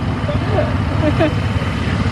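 ATV engine running, a steady low rumble, with faint voices over it.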